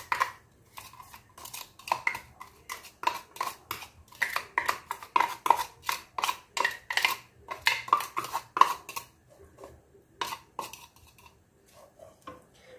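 Wooden spoon scraping and tapping against a small clear bowl and the pot, knocking chopped onion and garlic into the pot: a quick irregular run of light knocks, several a second, thinning out over the last few seconds.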